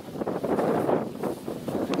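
Wind buffeting the microphone outdoors, with rustling noise.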